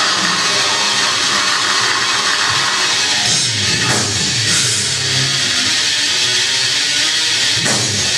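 Live metal band playing loudly: distorted electric guitars, bass guitar and a pounding drum kit in one dense, continuous wall of sound.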